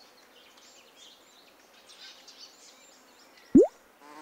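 Faint outdoor ambience with scattered bird chirps. About three and a half seconds in, a single quick upward-swooping sound effect rises sharply and is the loudest sound.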